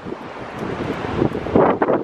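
Wind buffeting a camera microphone on an ocean beach, over the wash of breaking surf, growing louder toward the end.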